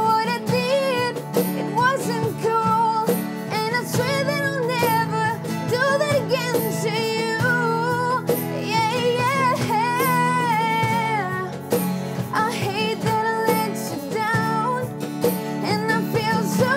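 Two acoustic guitars strummed together while a woman sings the melody, with a steady percussion beat.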